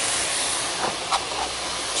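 Raw meat strips sizzling in hot oil over fried onion and carrot in a pan: a steady frying hiss, with a couple of faint clicks about a second in.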